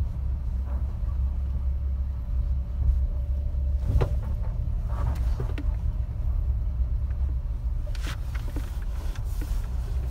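Cabin sound of a 1988 Dodge Raider driving: a steady low engine and road rumble, with a few sharp knocks and rattles, the loudest about four seconds in.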